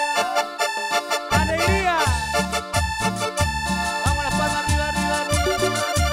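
Live cumbia band starting a song: an accordion-like melody of held notes, joined about a second and a half in by bass and percussion in a steady cumbia beat.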